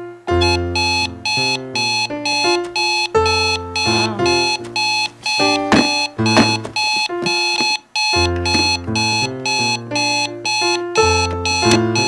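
An electronic bedside alarm clock going off with rapid, evenly repeated beeps, layered over keyboard music.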